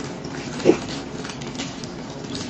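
Close-miked chewing with the mouth closed, with light clicks and rustles of a paper muffin liner being handled. About two-thirds of a second in comes one brief, louder mouth sound, the loudest thing here.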